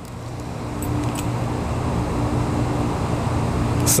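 A low, steady engine hum from a motor vehicle, growing a little louder, with two faint clicks about a second in.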